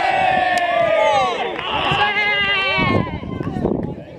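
Several men shouting long, drawn-out calls on the pitch, their voices overlapping: one long shout runs through the first second and a half, and a second follows until about three seconds in.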